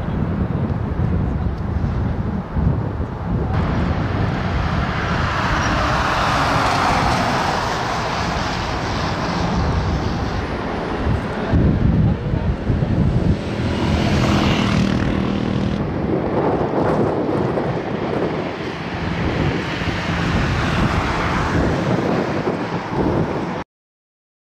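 Outdoor street noise: steady traffic with wind buffeting the microphone, and some voices in the mix. It cuts off suddenly near the end.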